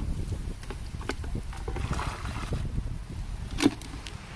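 Low wind rumble on the microphone and handling noise as a plastic bucket is tipped out into a pond, with a few light clicks and one sharp knock near the end.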